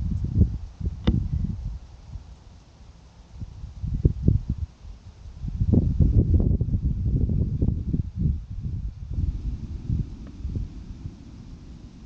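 Wind buffeting the camera's microphone in uneven low gusts, strongest a little past the middle, with a brief click about a second in.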